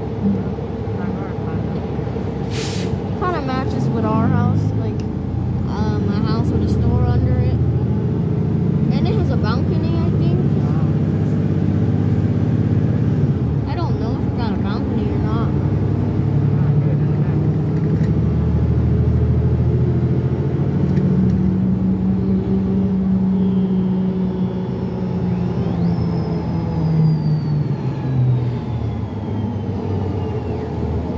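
Inside a 2017 New Flyer XD40 diesel city bus pulling away from a stop and accelerating, the engine drone rising and shifting in pitch. There is a brief sharp noise about three seconds in, and passengers talk in the background.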